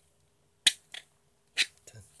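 Sharp plastic clicks as a plastic brush is moved in and out of the holder on its blue plastic lid, where it sits loose. There are two loud clicks about a second apart, each followed by a fainter one.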